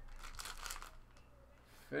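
Plastic bag crinkling as hands open it and pull out a card in a hard plastic holder, soft crackling that dies away about a second in.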